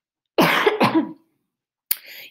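A woman coughing twice in quick succession.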